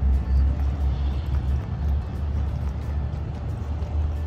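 Car's engine and road noise heard from inside the cabin: a steady low rumble while the car moves slowly.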